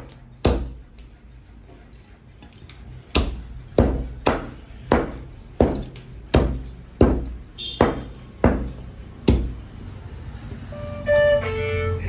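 A heavy cleaver chopping a raw chicken into pieces on a wooden chopping block: about a dozen sharp strikes, roughly one every 0.7 s, after a pause of about two seconds early on. A few plucked musical notes come in near the end.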